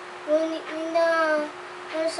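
A boy reciting a Tagalog poem aloud in a slow, drawn-out, sing-song voice, holding long notes, with short pauses between phrases.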